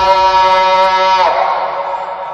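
Vocal nasheed: one long sung note held on a steady pitch, breaking off a little over a second in, with a faint low tone lingering after it.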